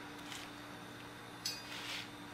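Quiet garage room tone with a steady low hum, and a single short metallic clink about one and a half seconds in.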